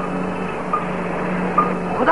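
A steady low hum under hiss on an old optical film soundtrack, with three brief faint high blips.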